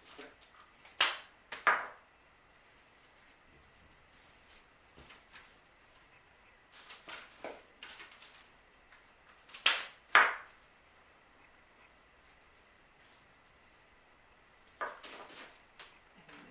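Sharp snipping clicks of cutters going through dried flower stems, in pairs: one pair about a second in, a fainter pair around seven seconds, and the loudest pair near ten seconds.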